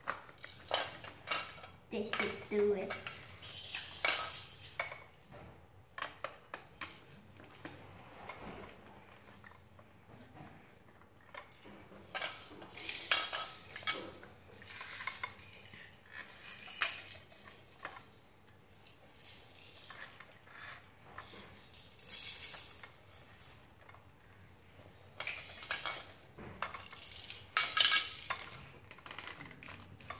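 Hard plastic toy pieces clicking and clattering as they are handled and snapped onto a tower, in irregular bursts of small knocks with the loudest cluster near the end.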